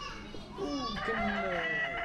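Men's voices talking, with a long, high call held for about a second in the second half.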